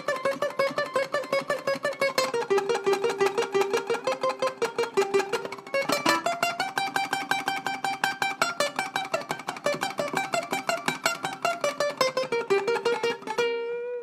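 Ukulele played with fast tremolo picking, a steady stream of rapidly repeated plucked notes, struck with the thumb, working through a surf-style melodic phrase. The pitch steps down, jumps up about midway and comes back down, ending on a held note near the end.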